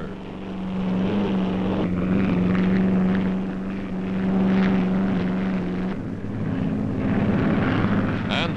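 Steady engine drone held at one low pitch, with a change in its tone about six seconds in.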